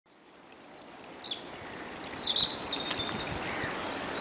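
Small songbirds singing over a steady rushing background, fading in from silence over the first second: quick high downward-swept calls, then a warbled phrase in the middle.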